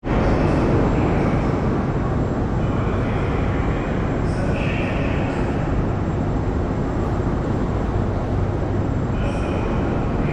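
A Moscow Metro train running through the station: a steady low rumble carried through the vaulted hall, with faint higher whines that come and go.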